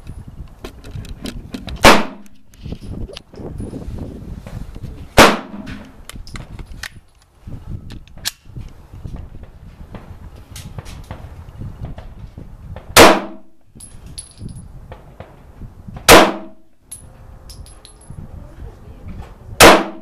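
Caracal Enhanced F pistol firing five single shots, spaced several seconds apart, each a sharp crack with a brief ringing tail.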